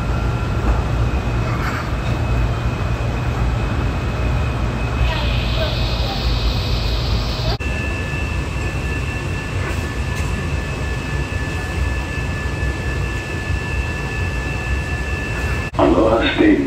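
Interior of a Honolulu Skyline driverless light-rail car in motion: a steady low rumble with a high, steady whine from the electric drive. A little past halfway the whine changes to a pair of steady tones.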